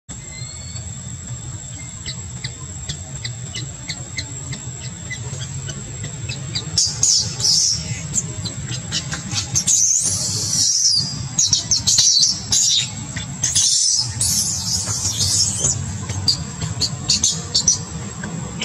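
Baby long-tailed macaque screaming in shrill, high-pitched bursts from about seven seconds in, sounds of distress as an adult grabs at it. Before the screams there are only faint short ticks over a low steady rumble.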